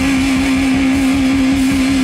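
Live rock band playing loud: electric guitars hold one long, steady sustained note while lower notes move underneath it.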